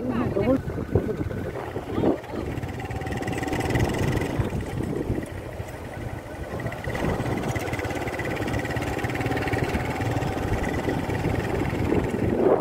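A motorcycle running on the move, its engine and road noise steady under people talking.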